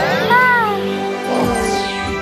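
Cartoon soundtrack: background music under a baby character's short wordless cry that rises and falls in pitch, followed by a falling swoosh sound effect.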